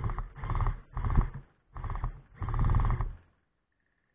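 Electric gel blaster fired on full auto, its motor and gearbox cycling rapidly in about five short bursts over three seconds.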